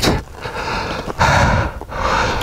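A person breathing heavily inside a motorcycle helmet, two long breaths, after a crash.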